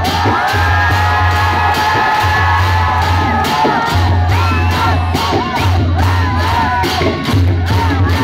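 Newar dhime drums played in a group, their strokes and low booming under a loud crowd cheering, shouting and whooping, the crowd noise heaviest in the first half.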